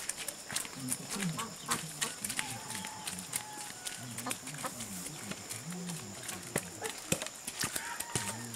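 Bamboo stilts knocking on a dirt path in irregular sharp knocks as a child walks on them, with voices talking throughout.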